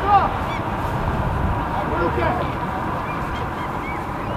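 Geese honking: a run of short calls, loudest and thickest right at the start and then sparser, over steady background noise.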